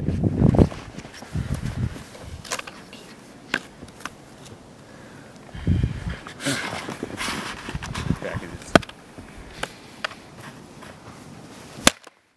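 Footsteps crunching in snow with handling noise, scattered with a few sharp clicks and knocks; the loudest click comes just before the end.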